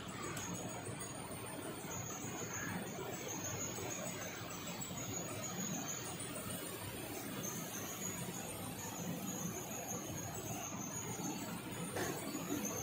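High-pressure hot water jet from an electric jet machine spraying into a stainless steel tank: a steady rush and hiss of water that keeps an even level throughout.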